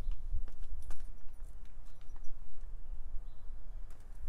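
Outdoor background: a steady low rumble, like wind on the microphone, with a few faint scattered clicks and light rustles.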